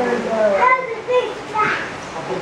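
Voices of children and adults talking and calling out, with no clear words.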